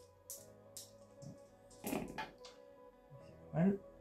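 A few light clicks and clatters of plastic dice being picked up and rolled on a gaming table, over faint background music.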